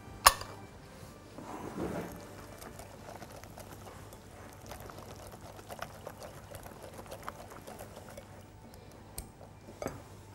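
Wire whisk stirring a thin milk-and-flour paste in a glass bowl, with many light ticks of the metal tines against the glass. A single sharp clink just after the start is the loudest sound.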